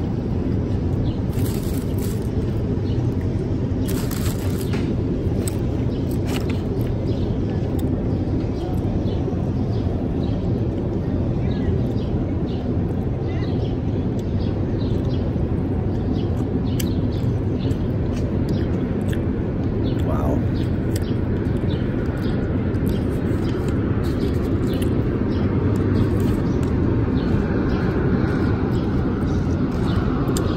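A man eating a chicken gyro, with chewing and lip-smacking and a few sharp mouth clicks in the first six seconds, over a steady low outdoor rumble. A rushing sound rises near the end.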